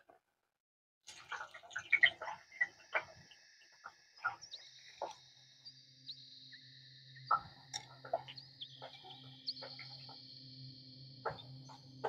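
Carrot pieces frying in hot oil in an iron kadai: faint scattered crackles and pops of sizzling oil, starting about a second in and continuing irregularly.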